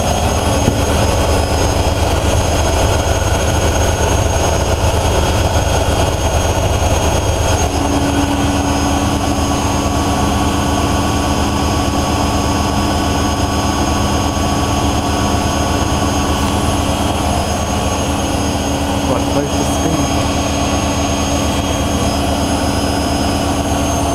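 Two front-loading washing machines, a Miele W5748 and a Whirlpool AWM 1400, both in their final spin at top speed (1600 rpm and 900 rpm): a loud, steady spin drone with a low hum and steady whining tones. A further steady tone joins about eight seconds in.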